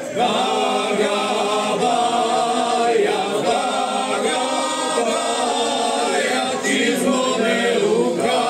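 Men's folk singing group of about seven voices singing a cappella in close harmony, the singing rising in about a quarter second in and carried on in long sustained phrases.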